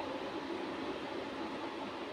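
Steady background hiss of room noise with no distinct event.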